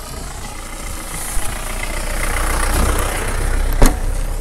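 Vehicle engine and road noise building over the first three seconds as a small pickup truck passes on a rough road. A single sharp thump comes near the end.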